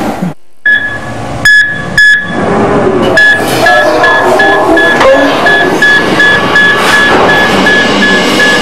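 Hospital patient monitor beeping: two sharp high beeps early on, then a steady high beep repeating about three times a second, over soft music at the opening of a music video.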